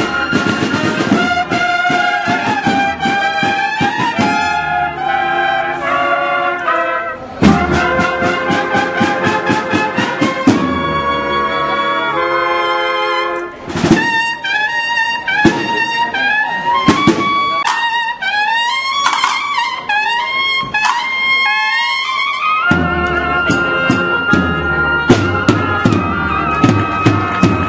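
A brass band of trumpets, trombones and tuba playing loud held and moving brass lines, with drum strikes punctuating the music, including a quick run of beats about a third of the way in and a loud hit around the middle.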